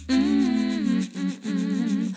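A woman humming a wordless melody in short, wavering phrases with brief breaks between them, as the song's outro. A low bass note under the voice fades out about halfway through.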